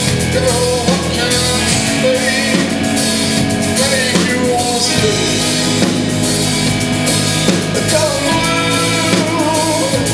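Live metal band playing at full volume: a lead singer over distorted electric guitars, bass and a drum kit keeping a steady beat.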